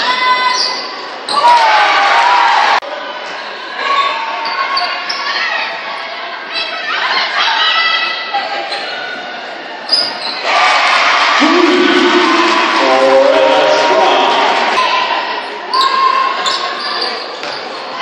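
Live game sound in a large gymnasium: a basketball dribbling on the hardwood court, short high sneaker squeaks and voices calling out. A louder stretch of crowd noise rises in the middle and lasts a few seconds. The sound jumps abruptly at clip cuts.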